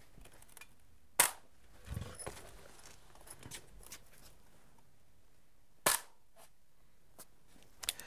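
A chalk line snapped against rigid foam insulation board twice, each snap a single sharp crack, the two about five seconds apart. A softer, duller knock follows shortly after the first snap.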